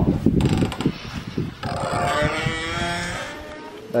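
Scattered knocks and rustling, then, about one and a half seconds in, an animal's long drawn-out call lasting about two seconds.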